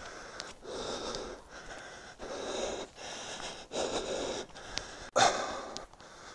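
A runner breathing hard while running uphill, heavy rhythmic breaths about one a second. About five seconds in there is a sudden, louder burst of breath.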